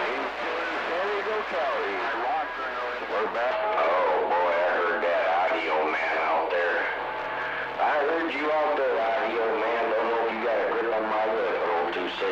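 CB radio receiver playing a steady hiss of static with faint, garbled voices of distant stations coming through it.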